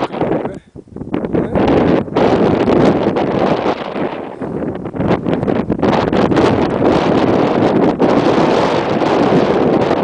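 Wind buffeting the camera's microphone, loud and gusty, with a brief lull just under a second in.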